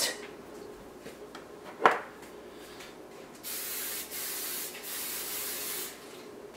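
A single knock about two seconds in, then three hissing sprays from a kitchen sprayer misting the tops of bread dough balls to keep them moist. The first two sprays are short; the last lasts about a second.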